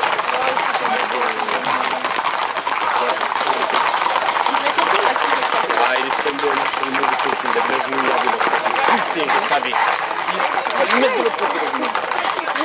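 Many voices shouting and chattering over a dense clatter of Camargue horses' hooves and running feet on an asphalt road.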